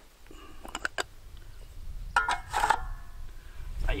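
A few light clicks and knocks of handling gear around the clay target thrower about a second in, then a brief mutter of voice.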